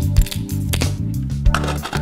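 Background music with a steady beat, over faint crunching clicks of a hand pepper mill grinding pepper.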